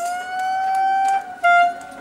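A siren-like pitched tone slides up and is held steady for about a second, then breaks off; a shorter, louder blast of the same note follows.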